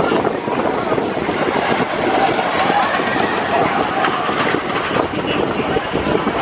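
A wooden roller coaster train rumbling and clattering along its wooden track, with people's voices mixed in.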